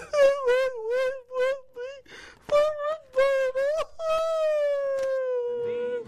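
A high, wavering voice imitating a sad man crying: a string of short sobbing wails, then one long drawn-out moan from about four seconds in that slowly falls in pitch.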